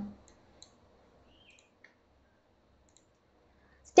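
A few faint, isolated computer mouse clicks, likely advancing the presentation slide, against near silence.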